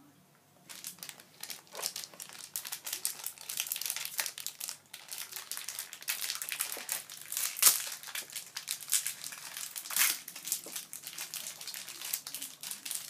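A crinkly foil blind-bag packet being handled and torn open by hand, with dense, irregular crackling that starts about a second in and has its sharpest crackles in the second half.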